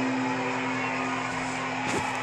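Electric guitar ringing on after the singing stops, fading slowly into a steady hum and hiss from the amplifier. A soft knock comes near the end.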